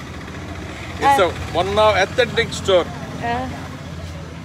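Voices talking briefly over a steady low rumble of street traffic.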